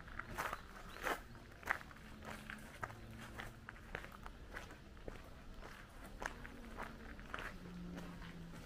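Footsteps crunching on a gravel path at a steady walking pace, about three steps every two seconds, loudest in the first two seconds.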